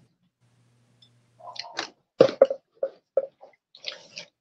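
Small porcelain hinged trinket box being opened: a string of light clicks and taps from its metal clasp and lid, starting about a second and a half in, with a few more near the end.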